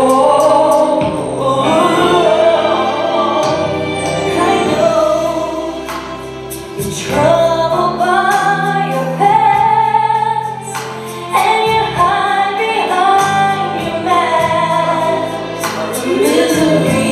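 Gospel song with choir and female voices singing held notes over a steady bass line and backing instruments.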